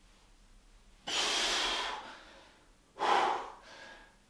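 A man breathing out hard through the mouth under exercise effort, twice: a long forceful exhale about a second in and a shorter one about three seconds in.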